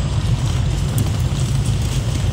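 Engine and road noise inside a moving car's cabin: a steady low rumble.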